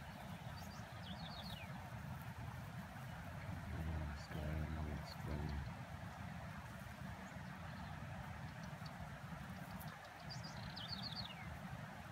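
A small songbird sings a short run of quick notes that fall in pitch, twice: about a second in and again near the end. Under it is a steady outdoor wind hiss.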